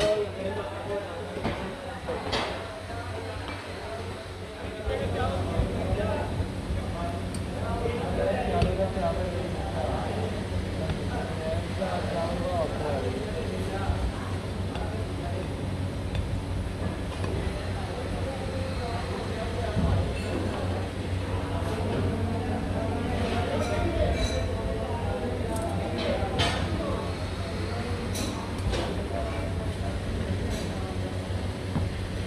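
Metal hand tools clinking against a steel moulding flask as it is packed with foundry sand: a few sharp clinks, several of them bunched about two-thirds of the way in. Voices talking and a steady low hum run underneath.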